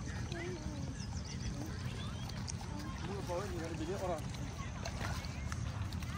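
Faint, distant voices over a steady low rumble of outdoor background noise; the clearest stretch of voice comes about three seconds in.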